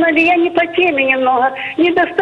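A caller's voice speaking over a telephone line, thin and cut off above the middle range, with drawn-out vowels.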